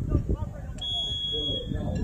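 Referee's whistle: one steady, high-pitched blast of just under a second, starting near the middle, which signals that the free kick may be taken. Spectators' voices run underneath.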